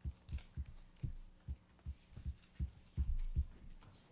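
Irregular soft low thumps, a few a second, with a faint steady hum underneath: handling noise of papers and hands knocking on a table near a microphone.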